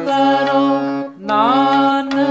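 Harmonium playing a kirtan melody with held reed notes, under a sung vocal line that slides up into its notes. The sound drops out briefly a little over a second in, between two phrases.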